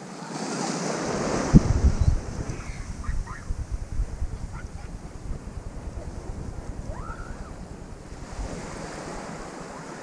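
Small waves washing in over the sand at the water's edge: one surge in the first two seconds, then a softer one near the end. Wind buffets the microphone, loudest about one and a half to two seconds in.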